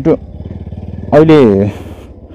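Motorcycle engine running with a low, steady note, with a man's voice breaking in twice, louder than the engine.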